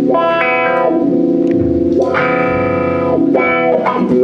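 Electric guitar through effects (distortion and chorus) playing a few slow, long-held chords that change about two seconds in and again near the end, with a low bass note held underneath for about a second and a half in the middle.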